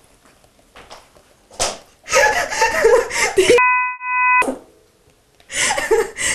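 A woman laughing, with a sharp slap about one and a half seconds in. Partway through, a censor bleep of several steady tones replaces the sound for under a second.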